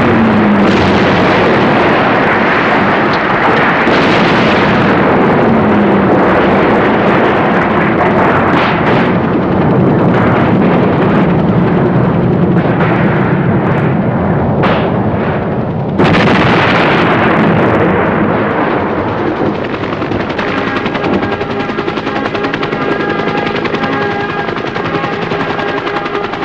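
Battle sound effects from a war film: gunfire with machine-gun bursts over a loud, dense rumble. Music with held notes comes in underneath during the last several seconds.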